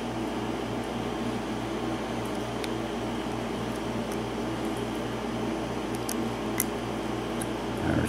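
A few faint, sharp metal clicks from a hook pick lifting and setting the pin tumblers of a seven-pin Lockwood door lock cylinder under light tension, over a steady background hum.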